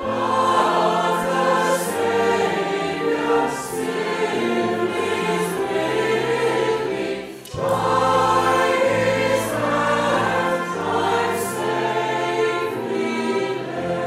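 A choir singing a hymn verse in held, sustained phrases, with a short break between lines about halfway through.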